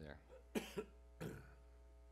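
A man coughing twice in quick succession, two short sharp coughs over a faint steady hum.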